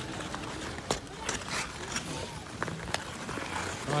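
Ice skates scraping and gliding over ice, with a sharp click about a second in and voices of other skaters in the background.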